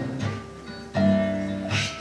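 Acoustic guitars and a double bass playing an accompaniment with no singing: the sound dips at first, then a new chord is struck about a second in and rings on.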